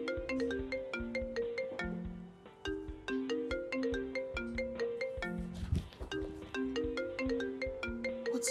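Mobile phone ringing with a melodic ringtone: a short tune of quick, struck notes repeated over and over.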